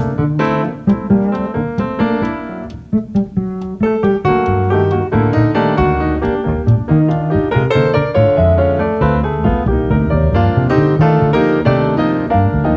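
Grand piano and plucked upright double bass playing jazz: quick piano chords and runs over low bass notes, with a brief drop in loudness about three seconds in.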